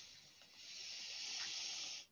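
A faint, steady hiss of noise, starting about half a second in and cutting off sharply near the end.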